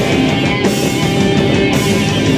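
Funeral doom metal played live by a full band: heavily distorted electric guitars sustaining slow, low chords over bass, with a drum hit about once a second, all loud and steady.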